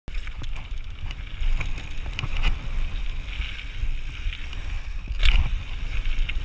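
Orange Five mountain bike rolling down a loose gravel trail: tyres crunching over stones and the bike rattling with scattered clicks and knocks, over a constant low rumble of wind on the chest-mounted camera. A louder knock comes about five seconds in.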